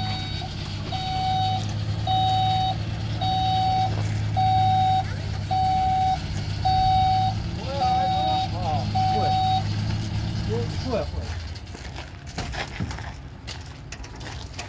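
Zamyad pickup truck idling while its reversing alarm beeps about once a second, one steady tone. The beeping stops a little before the engine cuts out, near the end of the beeping, after which a few clicks and knocks follow.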